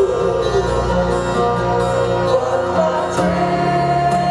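A rock band playing a slow ballad live through an arena sound system, a held melody line over a steady bass; a new, higher held note comes in about three seconds in.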